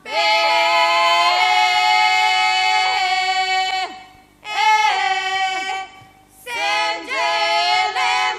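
Women's voices singing together unaccompanied, a traditional Prespa Macedonian folk song in long held phrases with two short breaks between them.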